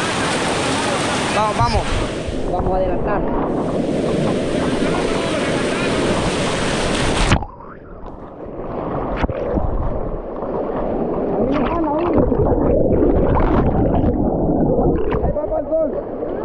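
River rapids rushing loudly close to the microphone, with voices shouting a couple of seconds in. About seven seconds in the sound suddenly goes muffled as the camera dips into the water, leaving a dull, gurgling underwater rush with scattered splashes.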